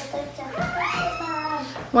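A young child's long, wavering whining cry, one drawn-out high-pitched call in the second half.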